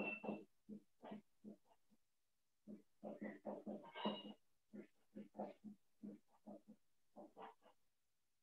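Faint marker strokes on a whiteboard: a quick run of short rubbing squeaks as a chemical equation is written, with a pause of about a second near the start.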